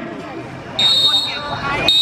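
Referee's whistle, two short shrill blasts about a second apart, signalling full time at the end of the second half.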